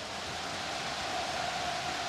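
Stadium crowd applauding and cheering, blended into a steady wash of noise.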